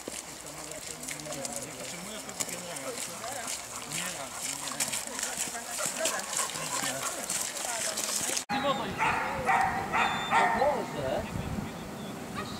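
Voices and footsteps on a dirt track as people walk with dogs. After an abrupt cut, a dog barks several times in quick succession.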